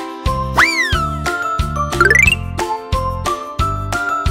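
Bouncy children's background music with a steady beat. About half a second in, a whistle-like sound effect slides up and falls away; around two seconds in, a quick rising run of tinkling chime notes plays.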